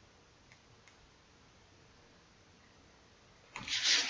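Near silence with two faint clicks about half a second apart, then rustling as a soft quilted fabric lunch box is moved and handled near the end.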